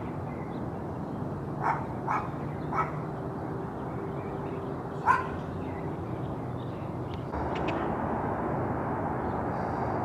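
A dog barks three times in quick succession, then once more, louder, about five seconds in, over steady background noise that grows louder about seven seconds in.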